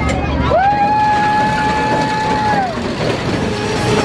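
Small kiddie roller coaster running along its track, with a steady rumble. Over it a single high note rises about half a second in, holds level for about two seconds and drops away.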